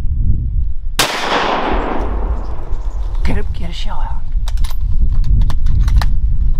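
A single hunting gunshot about a second in, its echo rolling off over the next second, fired at a whitetail buck from a tree stand. Scattered sharp clicks and knocks follow.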